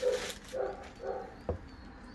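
Short, low animal calls repeating about every half second, with a single sharp click about one and a half seconds in.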